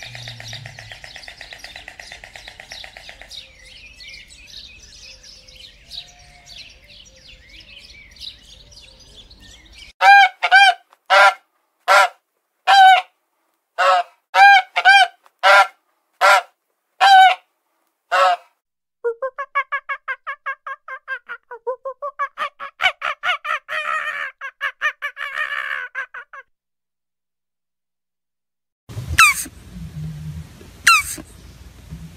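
White storks clattering their bills, a fast dry rattle lasting about ten seconds. Then about a dozen loud, separate honks from waterfowl, followed by a quicker run of shorter honking calls that stops a few seconds before the end.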